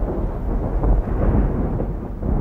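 A loud, continuous low rumble with a noisy haze above it, easing off slightly, like thunder.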